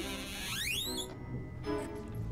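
Background film music with a rising, shimmering sweep effect that starts about half a second in, climbs to a very high pitch and breaks off just after a second. Steady held notes continue beneath it.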